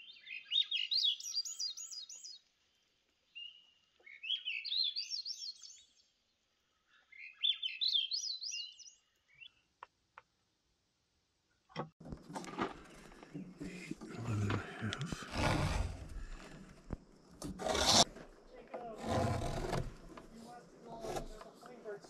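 A songbird sings three short phrases of quick, high, rising and falling notes over the first ten seconds. From about twelve seconds in there is scraping and rubbing noise with knocks, as a steel square and pencil are worked over a rough-cut lumber board.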